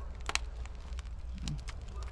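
Wood fire crackling inside a wood-fired oven while it is being built up: a few scattered sharp pops, the loudest about a third of a second in, over a low steady rumble.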